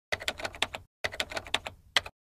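Typewriter keys clacking in two quick runs of about eight strokes each, with a short pause between, then one last single strike.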